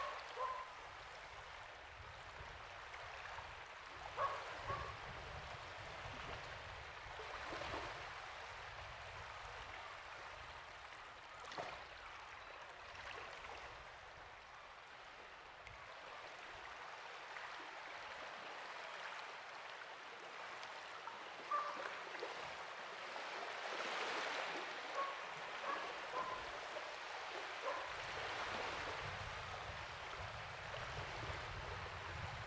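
Gentle shallow water lapping and trickling over wet sand at low tide, swelling softly a couple of times. A few short distant calls break through, a couple early on and several more near the end.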